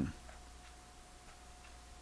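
Quiet room tone: a faint steady hum with a thin high tone, as a man's speaking voice trails off at the start.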